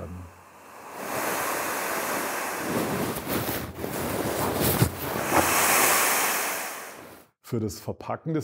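Air rushing out of an inflated ORTOVOX AVABAG LiTRIC avalanche airbag as the bag is pressed down by hand, the deflation tool holding the system box open for deflation. A steady rushing hiss that swells about five to six seconds in and then fades away.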